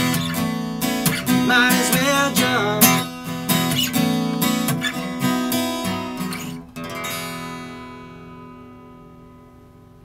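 Steel-string acoustic guitar strummed in a slow rhythm. The strumming stops about seven seconds in, and the final chord of the song rings out and fades away.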